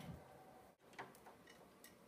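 A handful of faint, short clicks of tuning pins being handled and set by hand into the pin block of a grand piano being restrung, the clearest about a second in.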